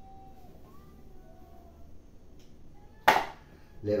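Faint room noise, then one sharp knock about three seconds in, from a kitchen sieve of flour striking the mixing bowl as flour is sifted into the batter.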